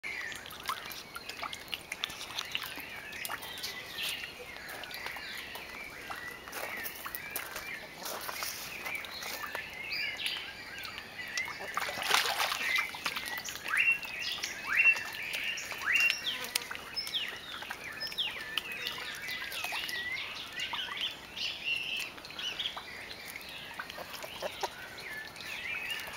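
Birds chirping and calling, many short overlapping calls, some falling in pitch, going on throughout. About halfway through there is a brief louder rush of noise.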